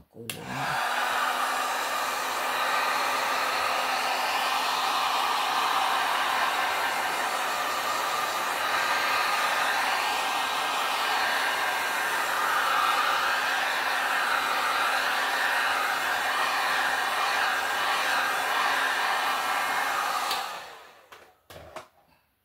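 Handheld heat gun blowing steadily over a freshly poured acrylic painting, a steady rush of air with a low motor hum beneath it. It switches on about half a second in and cuts off about 20 seconds in.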